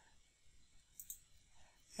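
Near silence with a couple of faint clicks about a second in and shortly after, a computer mouse clicking through a software menu.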